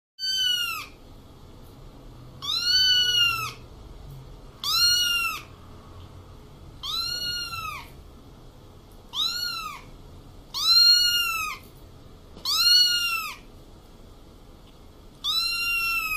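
A young kitten meowing over and over, eight high-pitched calls about two seconds apart, each rising and then falling in pitch.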